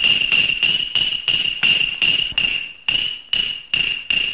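Chinese opera accompaniment: a wood block knocked evenly about three times a second under one long held high instrumental note.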